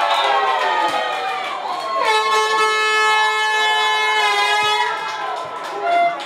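Shouting voices, then a single long air-horn blast about two seconds in, held steady on one pitch for roughly two and a half seconds before cutting off.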